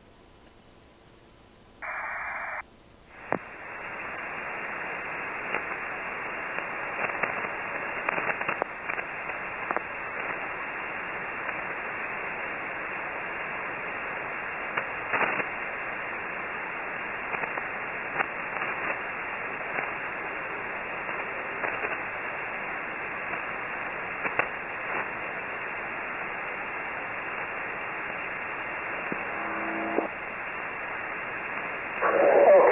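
Shortwave receiver static: a steady hiss with scattered crackles, the open 20-metre band heard in upper-sideband mode with no one transmitting. It comes in about three seconds in, after near silence, a short burst of hiss and a click as the radio is switched over from digital voice to sideband.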